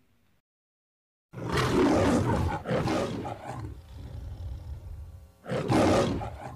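Lion roar of the MGM-logo kind, heard twice: a long roar starting about a second in that trails off into a lower growl, then a second loud roar near the end.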